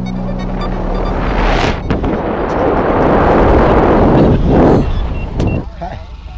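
Wind rushing over a hand-mounted camera's microphone under a parachute canopy, swelling to its loudest about three to four and a half seconds in, with a couple of brief sharp knocks.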